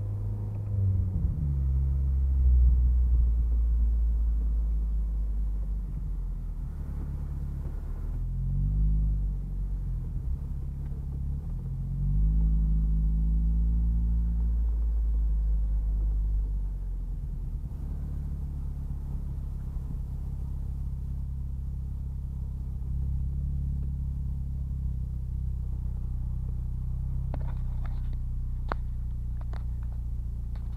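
Turbocharged Mazda MX-5's four-cylinder engine running at low speed in the cabin, a steady low rumble whose pitch rises and falls twice as the car accelerates gently, about eight seconds in and again around twelve to fourteen seconds in.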